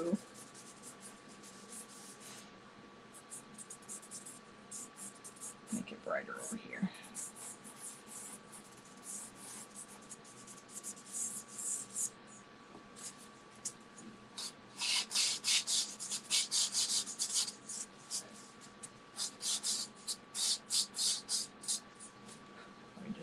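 Pastel being worked over sanded pastel paper: runs of quick, short strokes, busiest in the second half.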